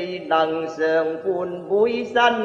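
A man singing Cantonese opera solo, in a chant-like line of held notes that slide between syllables.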